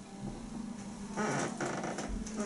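Instrumental intro of a pop backing track with held synth chords, before the vocal comes in. A louder, fuller sound joins for under a second about a second in.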